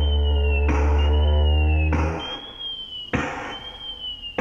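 A didgeridoo drone, a very low steady note with a stack of overtones, that stops about two seconds in. Over it runs a repeating electronic pulse, a short click with a high chirp about every 1.2 seconds, three times.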